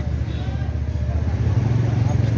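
Steady low rumble of a motor vehicle engine idling close by in street traffic.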